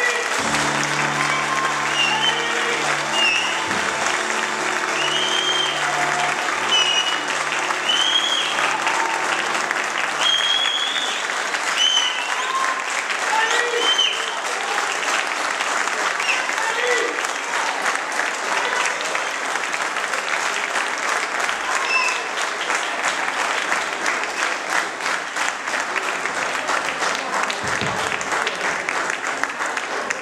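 Audience applauding steadily, with scattered voices calling out over it in the first half. Under the applause a low sustained instrumental chord holds for about ten seconds, then stops.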